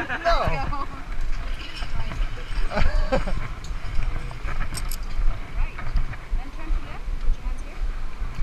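Indistinct voices, briefly at the start and again about three seconds in, over a constant uneven low rumble.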